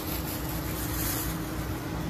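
Steady background hum and noise of a workshop, with a faint steady tone, and light rustling of thin plastic wrapping being handled as a mug is unwrapped.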